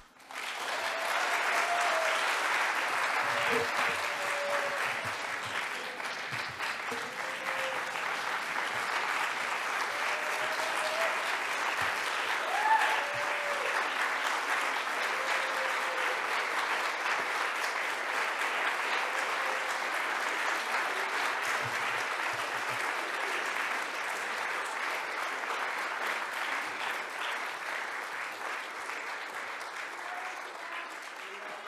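Large audience applauding steadily, with scattered voices calling out and one louder shout about twelve seconds in.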